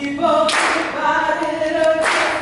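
A group of people singing together unaccompanied, their voices holding long notes, with a loud noisy burst about half a second in.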